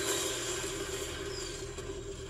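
Movie-trailer sound of a large explosion and blaze: a steady rush of noise over a held low tone, slowly fading, played back from the trailer.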